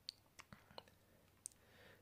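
A handful of faint, scattered taps of a fingertip on the glass touchscreen of a Motorola Droid, whose touch response is a little iffy.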